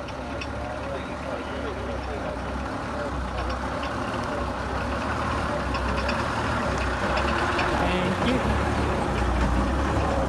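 Engine of a vintage half-cab single-deck coach running as it drives slowly up and past at close range, growing louder toward the end.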